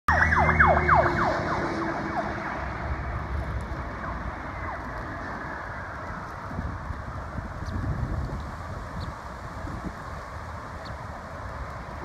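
Emergency vehicle siren going by on the road: a quick run of falling yelps at the start, then a slow falling wail that fades over several seconds. Steady traffic rumble runs underneath.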